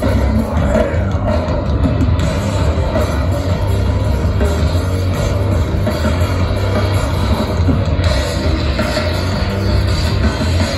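Live alternative metal band playing loud, distorted electric guitar, bass and drums through a festival PA, recorded from the crowd.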